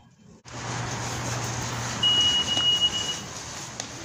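Busy shop background with a steady low hum, and one high, steady electronic beep held for a little over a second near the middle.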